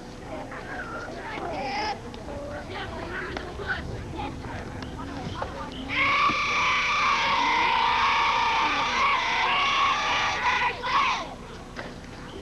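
Scattered distant shouts of children, then about six seconds in a group of high children's voices joins in a loud, sustained chant or cheer. It lasts about five seconds and stops abruptly.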